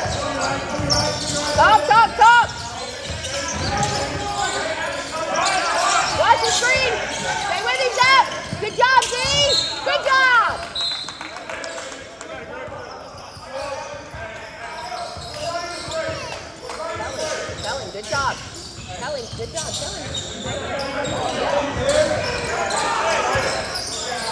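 Basketball game on a hardwood gym floor: sneakers squeaking in quick runs of short squeals, thickest in the first half, and a ball bouncing. Voices carry through the echoing hall.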